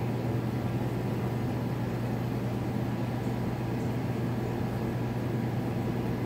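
Steady low machine hum with an even hiss behind it, unchanging throughout.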